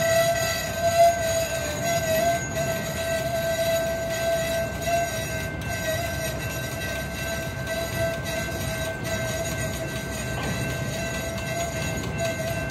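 Train of flatcars loaded with long continuous welded rail rolling slowly past. A low rumble sits under a steady, slightly wavering metallic squeal with overtones.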